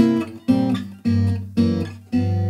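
Acoustic guitar playing a sequence of three-note chords, four chords struck about half a second apart, each ringing and fading before the next.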